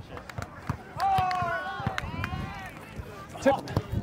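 A volleyball being struck in a rally, with a few sharp slaps of the ball. A player gives a long shout about a second in, and a short call of "tip" comes near the end.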